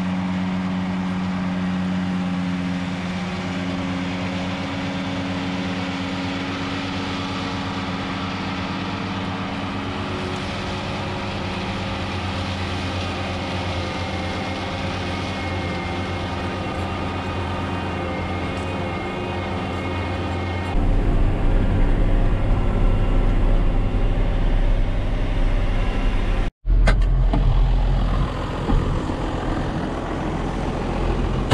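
Tractor engine running steadily under load while pulling a mower-conditioner through a heavy sorghum crop. About two-thirds of the way through the sound changes suddenly to a louder, deeper rumble, and it cuts out for an instant a few seconds later.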